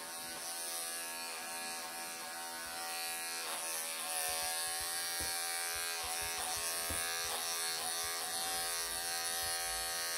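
Wahl cordless electric pet clippers running with a steady buzz, shearing a matted, pelted coat off a Persian cat; the sound gets a little louder about four seconds in.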